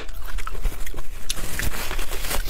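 Close-miked mouth sounds of chewing, small wet clicks, then a paper tissue rustling against the mouth near the end.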